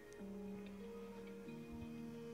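Faint background music: soft held notes that shift pitch a few times.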